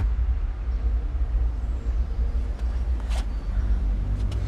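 A steady, deep low rumble with a faint hum above it, starting suddenly and holding through, with a light tick about three seconds in.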